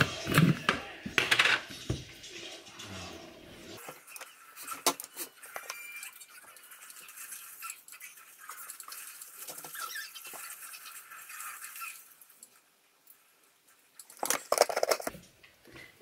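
A spoon, bowl and jars handled at a kitchen counter as protein powder is measured out: scattered light clicks and clinks, a near-silent pause of a couple of seconds, then a louder burst of handling near the end.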